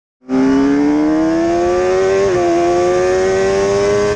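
A high-revving engine accelerating hard, its pitch climbing steadily with a brief dip a little past halfway before rising again.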